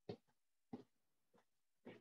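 Faint, light taps of a pair of small nunchucks bouncing off the insides of the legs, four brief taps spaced a little over half a second apart, in otherwise near silence.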